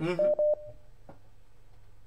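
Two short electronic beeps at one steady pitch, followed by a single click about a second in.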